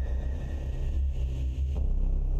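Steady low rumbling drone from the animated slide's background soundtrack, with the last thin high tones of the preceding music fading out in the first second.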